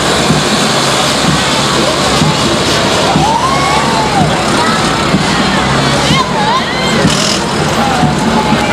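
Army light trucks driving slowly past with their engines running, under a steady noise of crowd voices and scattered shouts.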